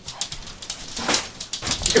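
A wet pug in a frenzy, scrabbling and rubbing about on the floor, with bursts of noisy breathing and a run of quick scuffling clicks.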